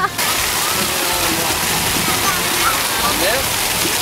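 Splash-fountain water jets spraying up from floor nozzles and splashing down onto wet pavement, a steady rush of water, with faint voices in the background.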